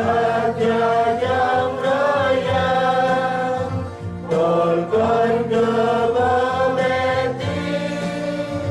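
A mixed choir of young men and women singing a hymn in held, flowing phrases, with electronic keyboard accompaniment underneath. There is a short break between phrases about four seconds in.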